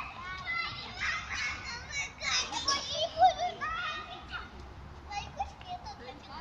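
Toddlers' high voices chattering and calling out while they play, loudest about three seconds in.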